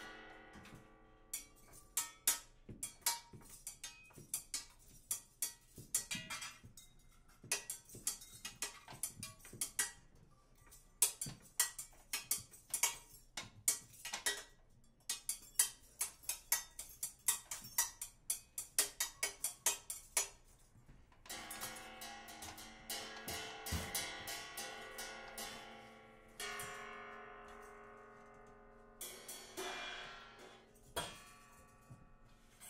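Free-improvised percussion duo: quick, irregular strikes on drums, cymbals and small hand percussion for about twenty seconds. A little after twenty seconds in, the strikes give way to long ringing tones with several steady pitches that fade out, a second such tone follows, and the strikes return near the end.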